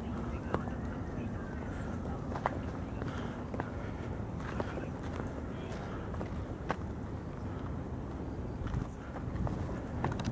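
Faint voices in the background over a steady low rumble, with sharp isolated clicks every second or so.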